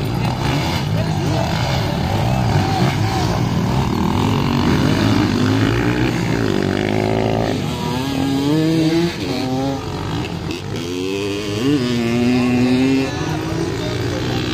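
Motocross dirt bike engines revving, their pitch repeatedly rising and falling with each burst of throttle as the bikes race around the track.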